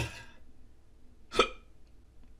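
A sharp click right at the start, then one short clink about one and a half seconds in: a metal Funko Soda tin being set down on a glass-topped table.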